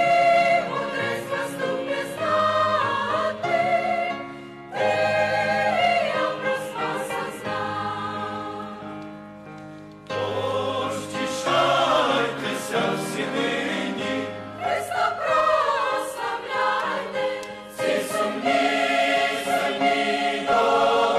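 Large mixed choir of men and women singing a Christmas choral song in harmony, with short breaks between phrases about four and a half and ten seconds in.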